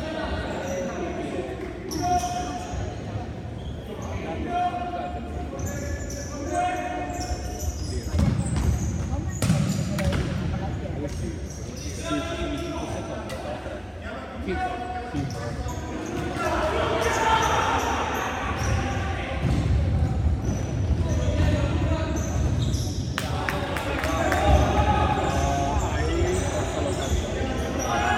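Futsal ball being kicked and bouncing on a wooden sports-hall floor, a string of sharp knocks, with players' shouts and calls echoing around the hall; the voices are loudest in the second half.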